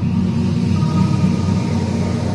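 Low, steady rumbling drone with faint held tones above it: the build-up sound of a TV channel's animated logo ident, leading into its music.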